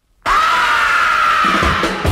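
A 1960s British beat-group rock recording begins abruptly out of silence with a loud held high note that sags slightly in pitch. Drums come in near the end.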